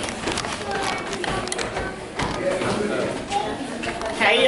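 Indistinct voices and chatter of people in a large indoor hall, with a few light clicks.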